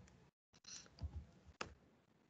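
A few faint computer keyboard keystrokes, the sharpest about one and a half seconds in, as a digit is typed into the code.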